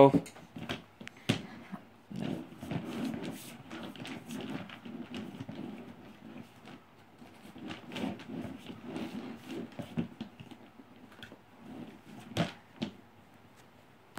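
A toddler's wordless vocal sounds mixed with small knocks and rattles of play, with a sharper, louder sound about twelve seconds in.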